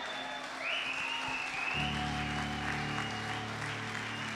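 Congregation applauding over sustained keyboard chords; a deeper held chord comes in about halfway through.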